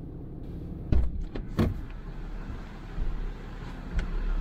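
Truck engine running low and steady, with two sharp knocks about a second and a second and a half in.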